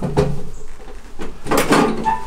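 Stainless-steel fold-out wall compartment for a built-in bathroom scale being pulled down open by its handle: short metal knocks, then a louder clatter near the end as the panel swings down.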